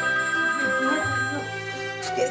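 A mobile phone ringing with a melodic ringtone over sustained background music.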